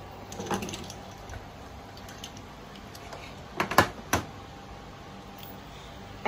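Direct-drive electric bicycle hub motor spinning its wheel freely on a stand under throttle, a faint steady hum and thin whine. A few sharp clicks come close together a little past halfway.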